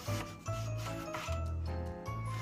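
Kitchen knife cutting through a white onion onto a bamboo cutting board, a few scraping strokes of the blade on the wood, over background music with a bass line.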